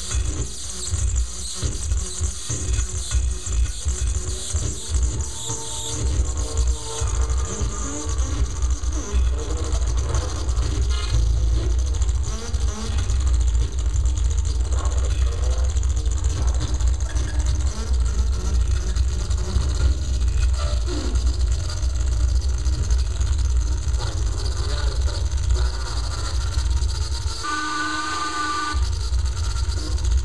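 Live electronic music played on tabletop electronics: a dense, heavy bass drone under noisy, shifting textures. Near the end the bass drops out for about a second while a few steady high tones sound, then it comes back.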